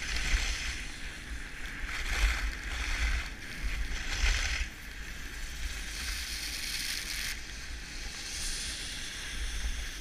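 Skis hissing and scraping over packed snow through a series of turns, swelling and fading every second or two, with wind rumbling on the microphone.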